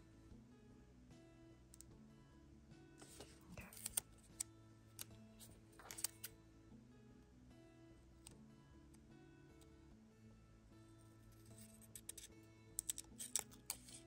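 Quiet background music with steady held notes. Scissors snip a few times through a paper sticker strip, with a quick run of snips near the end.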